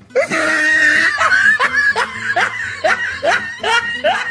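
A person laughing hard: a long unbroken run of short laughs, about two to three a second, each one rising in pitch.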